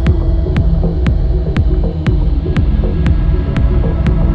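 Instrumental house/techno groove: a kick drum on every beat, about two a second, with an off-beat hi-hat tick between the kicks over a held synth bass.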